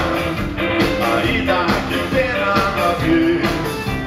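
A rock band with a horn section playing live: drums, electric guitar, keyboard and saxophones together in a full, steady arrangement.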